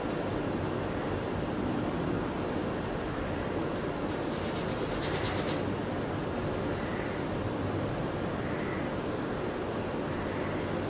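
Steady background noise with a thin high whine, like a room's air conditioning or fan, and a brief run of rapid clicking about halfway through.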